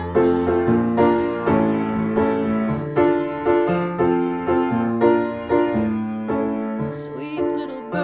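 Upright piano played solo: an instrumental passage of steady, evenly paced chords over a moving bass line.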